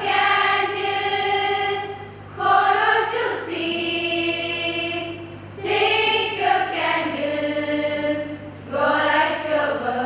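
A choir of young women singing a slow song together as one melody. They hold long notes in phrases of about three seconds, each followed by a short breath.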